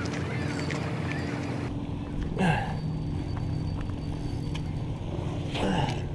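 A steady low engine hum with two brief swishes, one about two and a half seconds in and one near the end.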